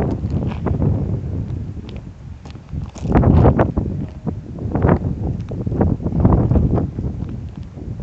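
Footsteps, an irregular step or scuff every half second or so, the heaviest about three seconds in and again near six seconds, over low wind rumble on the microphone.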